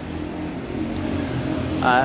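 Street traffic below: a motor vehicle's engine running with a steady low hum that grows slightly louder as it approaches.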